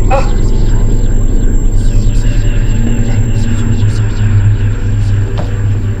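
Deep, loud drone of cinematic sound design and score, pulsing rapidly for a couple of seconds in the middle, with a brief cry-like sweep at the very start.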